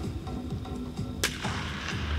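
A baseball bat hitting a ball for infield fielding practice: one sharp crack about a second in, echoing with a long tail in the large domed stadium. Background music plays throughout.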